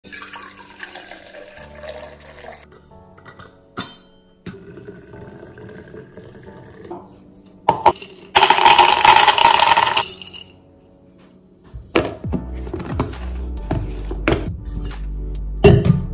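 Hot water and coffee being poured into a steel cup and a thermos, with liquid filling sounds and a loud rushing burst around eight to ten seconds in. Background music with a steady beat comes in at about twelve seconds.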